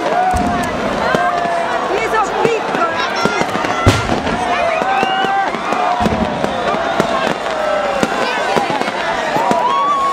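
A crowd shouting and cheering, many voices over one another, with scattered firecracker pops and one louder bang about four seconds in.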